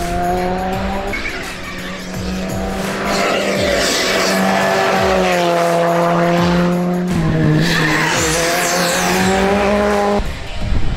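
Skoda Fabia N5 rally car engine revving hard, with tyres squealing through tight bends, under background music with sustained notes.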